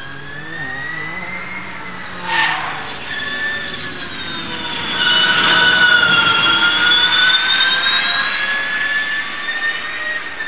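Audi S1 Hoonitron's electric drivetrain whining at high pitch as the car drives up the hill, with a short noisy burst about two and a half seconds in. The whine gets much louder about five seconds in as the car passes close by, and its pitch dips and then climbs again.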